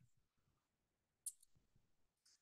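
Near silence: faint room tone with a few soft clicks and taps, the sharpest a brief high click about a second and a quarter in.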